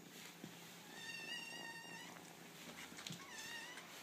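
Young kitten meowing twice, thin and high-pitched: a level call about a second long, then a shorter, rising one near the end.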